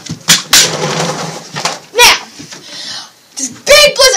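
A girl's short, scattered vocal sounds and breathy noises rather than full words, with a few short sharp sounds near the start.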